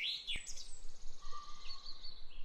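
Birds chirping and whistling over a faint outdoor hiss: an arching chirp at the start, then a high thin call and a held whistle in the second half.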